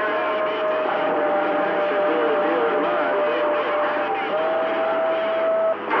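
CB radio receiver on channel 28 putting out static with steady heterodyne whistles from overlapping carriers, the tones shifting about four seconds in, and faint wavering, garbled voices underneath.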